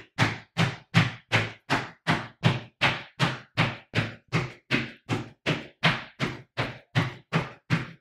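Sneakered feet landing together on the floor in a steady run of stiff-legged pogo jumps, about two and a half thuds a second, each foot landing flat with a smack.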